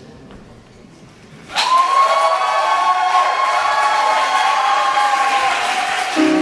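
Concert audience applauding with cheers and whoops, breaking out suddenly about a second and a half in and carrying on loudly.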